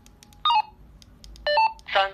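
Sunyuto SV 100 DMR walkie-talkie giving short electronic beep tones: a quick chirp of stepping pitches about half a second in, another stepped chirp around a second and a half, then a brief buzzier tone right at the end.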